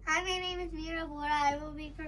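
A young girl's voice, drawn out on long, fairly steady pitches that step slightly lower as it goes.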